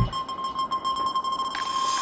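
Break in an electronic background music track: the drums and bass drop out, leaving one held high synth tone and a hiss that builds near the end, leading back into the beat.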